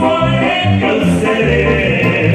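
A live tierra caliente band playing: a male singer holds long sung notes over brass, keyboard and a bass line of short separate notes.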